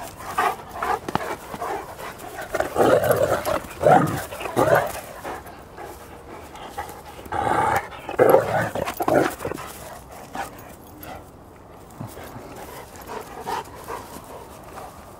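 A Cane Corso puppy and a Rhodesian Ridgeback play-fighting, with bursts of dog vocalizing and barking in two spells, a few seconds in and again just past the middle, fading toward the end.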